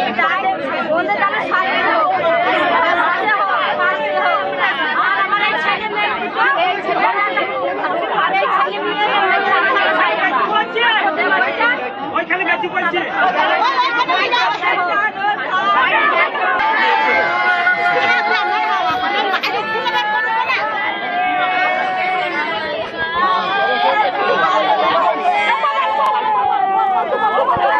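Several people talking at once: a dense stretch of overlapping voices and chatter with no single speaker standing out.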